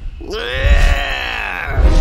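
A cartoon man's voice giving one long drawn-out cry that rises and then falls, a mock tiger roar, over music with deep booming beats.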